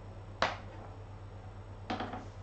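Two short taps about a second and a half apart, the first louder: a wand cat toy knocking against a cardboard box, over a low steady hum.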